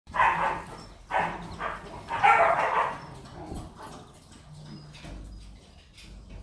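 A dog barking: a few loud barks in the first three seconds, then only fainter sounds.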